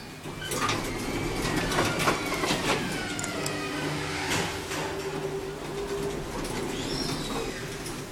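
Otis elevator car travelling, heard from inside the car: a run of clicks and rattles with a few falling squeals, then a steady hum through the middle of the ride.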